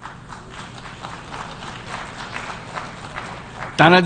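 Audience applause in a large hall, heard faintly and at a distance: a steady patter of many hands that fades in at the start and holds until the speech resumes near the end.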